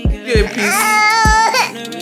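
Background music with a steady drum beat, over which a baby cries out once, a held wail of about a second in the middle.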